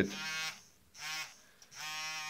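Small battery-powered electric manicure pen (nail file) with a grinding bit, its motor buzzing in three short spells with brief quieter gaps between. The buzz goes with heavy vibration of the pen, which the owner is unsure is normal.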